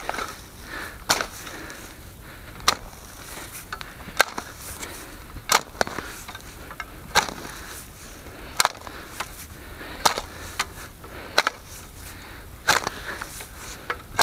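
Steel spade chopping into grassy turf and soil, a sharp cut about every second and a half as clumps are dug out and turned over.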